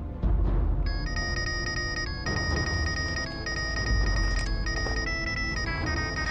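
A phone's electronic ringtone, a repeating pattern of high beeping tones that starts about a second in. It plays over dramatic background music with a deep bass.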